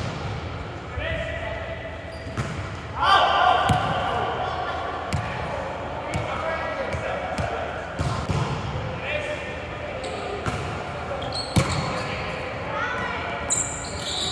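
A volleyball being struck and bouncing on a hardwood gym floor: a string of sharp knocks with echo in a large hall, mixed with players' short shouted calls.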